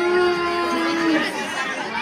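A child's voice over the stage PA holding one long, steady note that breaks off about a second in, then overlapping chatter.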